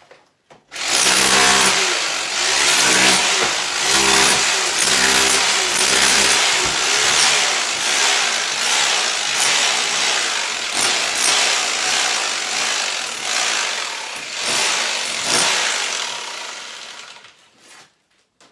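Corded electric hammer drill in chisel mode, hammering old plaster off a brick wall. It starts about a second in, runs with a rough, pulsing hammering and dies away near the end.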